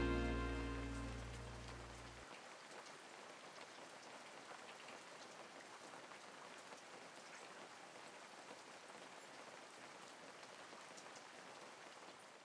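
The song's final guitar chord rings out and fades away over about two seconds. After it comes a faint, steady hiss with scattered small ticks.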